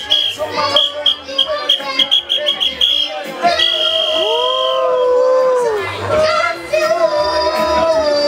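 A young boy's voice chanting and singing into a microphone over reggae backing music, with a regular low drum beat; about four seconds in he holds one long note that rises at its start and falls away at its end.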